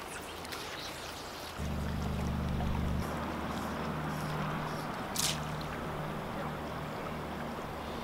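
Steady rush of river water, with a low whirring hum starting about a second and a half in as a spinning reel is cranked to retrieve the line, and a single click near the middle.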